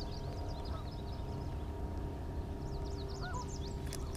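Small birds chirping in quick twittering bursts, about a second in and again near the end, over a faint low steady hum.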